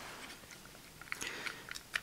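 Small plastic parts of a Deckerdramon action figure handled and clicking together, faint, with several sharper clicks in the second second.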